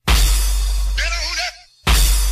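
Bass-heavy electronic dance track playing a looped pattern: a loud bass hit with a crashing wash of noise, a short chopped vocal snippet about a second in, then a brief drop before the loop starts again near the end.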